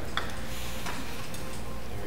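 A few light clicks and taps of glass jars and plastic bottles being handled and set down on a tabletop, over a steady low hum.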